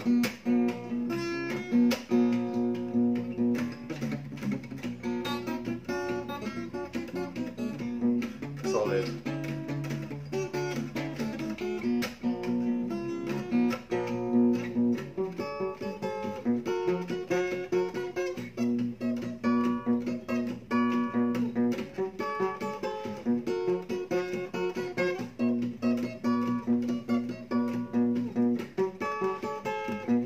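Steel-string acoustic guitar played fingerstyle in a Travis-picking style: a steady thumbed bass line with melody and harmony notes picked over it, running continuously.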